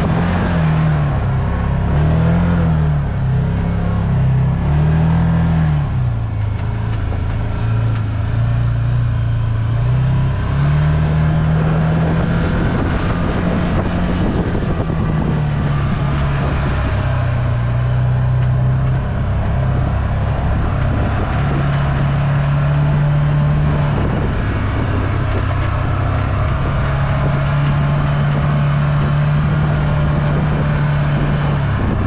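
Can-Am Maverick side-by-side's engine running under way, its pitch rising and falling quickly several times in the first few seconds as the throttle is worked, then holding steadier pitches that step up and down for the rest of the drive.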